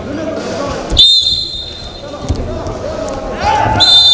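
Referee's whistle blown twice: a short blast with a thud about a second in, restarting the bout with two seconds left, and a longer blast starting just before the end as the clock reaches zero. Voices shout in between.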